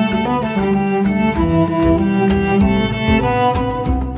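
Instrumental cello cover of a pop song: bowed cellos playing a sustained melody over a backing track with a steady beat.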